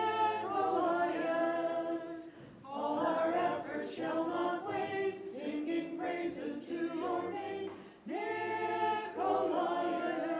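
A group of voices singing a Byzantine-rite liturgical hymn unaccompanied, in long held phrases with short breaks about two and a half seconds in and again about eight seconds in.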